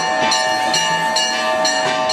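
Temple bells ringing steadily during the ritual bathing of the idol, struck about twice a second, with a sustained ringing tone between strokes.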